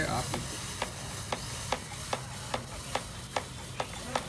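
Torpedo mini gas fogger running, with a faint hiss and a quick, slightly uneven ticking, about three to four ticks a second, as its gas burner runs out.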